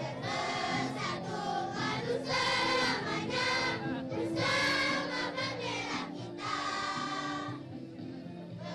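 A children's choir singing together in unison into microphones, with musical accompaniment underneath.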